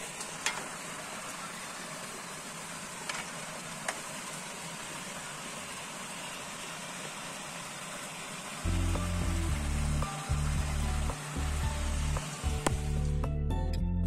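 Water pouring from a pipe into a concrete irrigation basin, a steady splashing rush. About nine seconds in, background music with a heavy bass line comes in over it, and the water sound cuts out shortly before the end.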